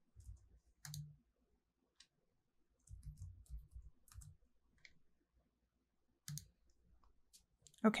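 Faint computer mouse clicks and a short run of keyboard keystrokes: a single click about a second in, a quick cluster of key presses around three to four seconds, and another click after six seconds.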